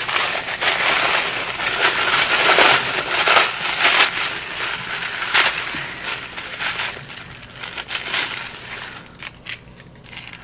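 Tissue paper being unwrapped and crumpled by hand, a dense crinkling with many sharp crackles. It is loudest over the first half and dies away near the end.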